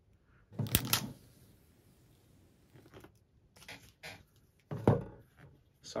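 Cardboard Apple Watch packaging being handled: a short rip about a second in, a few light taps, then a thump near the end as the box is set down on a wooden tabletop.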